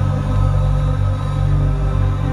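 Live electronic band music, loud and steady: sustained low notes held as a drone under fainter higher tones.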